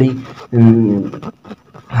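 A man's voice: one drawn-out syllable about half a second in, falling in pitch, then a short pause with little more than a faint breath.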